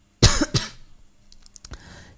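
A man's cough close to the microphone: one sharp cough about a quarter second in, with a smaller second cough right after it. A few faint clicks follow near the end.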